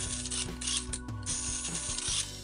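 Zingo Racing 9115 1:32 micro RC off-road car running, its small electric motor and gears making a high-pitched whir. The whir dips briefly about a second in, then picks up again.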